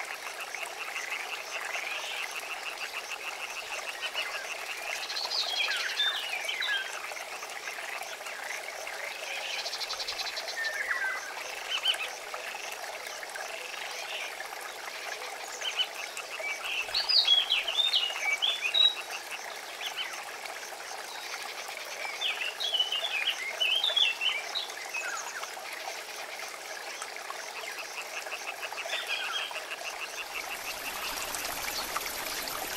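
Frogs croaking by a river: a fast pulsing chorus with short spells of quick rising and falling calls every few seconds, loudest about halfway through, over a steady hiss.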